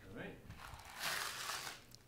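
A scoop of small beads rattling and pouring from one container into another: a brief rushing rattle about a second in, lasting under a second.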